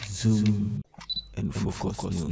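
Camera shutter click sound effects in a news-intro sting: a short low steady tone cuts off suddenly, then a few quick clicks follow, and a voice starts near the end.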